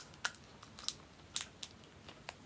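Caramilk chocolate bar wrapper crinkling faintly as it is torn open at the mouth, a handful of separate short crackles.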